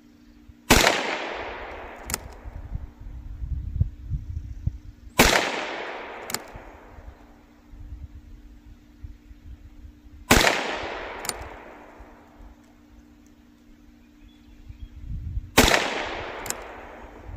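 Ruger Wrangler Sheriff's model .22 LR single-action revolver fired four times, about five seconds apart. Each shot is sharp, with a long echoing tail. A lighter click follows each shot about a second later as the hammer is cocked for the next round.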